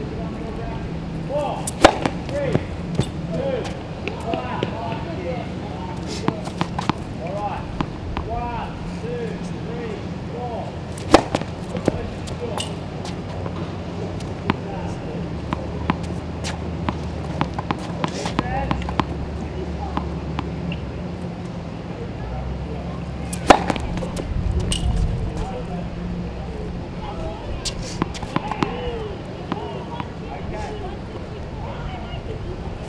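Tennis serves: a racket hitting the ball with three sharp, loud strikes about ten seconds apart, with lighter ball bounces on the hard court in between.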